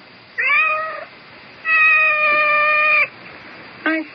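A cat meowing twice: a short meow that rises then levels off, then a longer meow held at a steady pitch for over a second.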